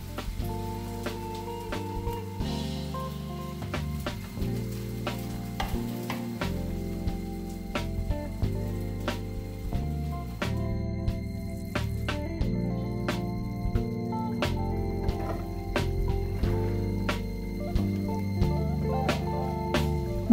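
Artichoke and pea curry bubbling and sizzling in a frying pan on the stove, with scattered crackles. Soft background music with held chords plays under it.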